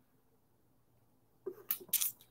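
Near silence, then about one and a half seconds in, a few short, sharp breath sounds from a man, like a sniff or a stifled sneeze.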